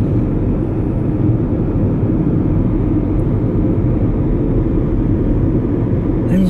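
Steady low rumble of a moving car heard from inside its cabin: engine and tyre noise at cruising speed.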